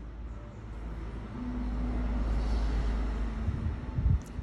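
Low rumble of a passing road vehicle, swelling through the middle and easing off, with a thump near the end.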